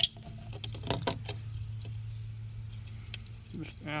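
Sharp clicks and snaps of 3D-printed plastic support tabs being cut and pried off a stack of face shield frames with a pocket knife. The loudest snap comes right at the start and a few more follow about a second in, with faint ticks of small plastic bits between them, over a steady low hum.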